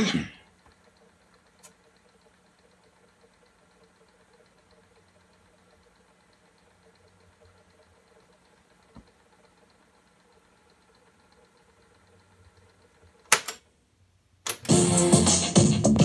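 Faint steady whir of a Sears boombox's cassette deck winding the tape, then a sharp mechanical click of the deck's controls about thirteen seconds in. Music from the boombox's speakers starts loud about a second later.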